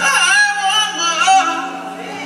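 A song: a voice singing held, wavering notes over a steady low sustained tone.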